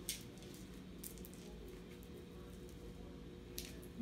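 A kitten scampering on a wooden parquet floor, its paws and claws making a few faint short clicks: one at the start, one about a second in and one near the end, over a low steady room hum.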